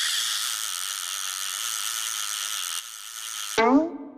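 Cartoon sound effect of a fishing reel whirring as the line pays out and the hook is lowered. It runs steadily and cuts off suddenly about three and a half seconds in, where a voice begins.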